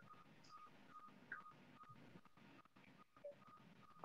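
Hospital bedside patient monitor beeping faintly over a video call, short even beeps at one pitch about two a second. The beeping signals that the patient's heart rate has gone up.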